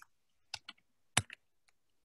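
About five short, sharp clicks spread over a second and a half, the loudest a little past halfway.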